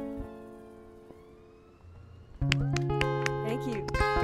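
Acoustic guitars' final chord ringing out and fading away. A little past halfway, the guitars come in again loudly with sharp strummed chords.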